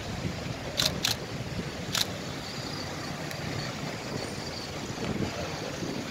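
Street ambience: a steady low rumble of traffic and wind on the microphone, with three short sharp clicks in the first two seconds.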